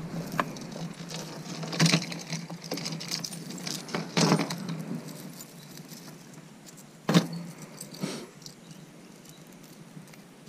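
Costume jewelry and metal chains jangling and clinking as gloved hands rummage through and lift them from a plastic jewelry box. The clinks come in scattered clusters, thinning out in the second half, with one sharp clink about seven seconds in.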